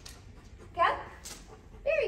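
A single short vocal sound rising in pitch about a second in, over quiet room tone.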